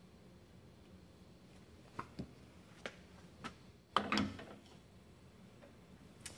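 Espresso gear being handled after tamping: a few light clicks, then a louder metallic clack about four seconds in, as the tamped portafilter is taken to the espresso machine and fitted at the group head.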